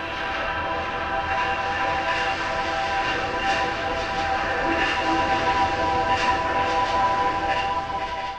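Korg Triton Extreme software synthesizer playing its 'Ghost Train' preset: a held cluster of steady, whistle-like tones over a rushing, train-like noise, growing a little louder about a second in.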